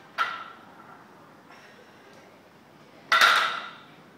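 Loaded barbell touching down on the floor twice between deadlift reps, about three seconds apart: each a metallic clank of the weight plates with a short ring, the second louder and longer.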